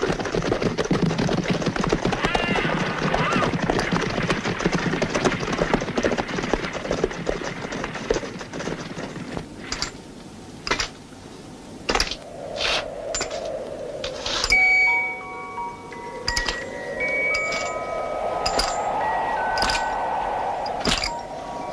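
Film soundtrack. For about eight seconds there is dense noise of the horses and riders moving about. Then a sparse score of ringing chime-like notes comes in, with sharp clicks and a slowly sinking and rising eerie tone.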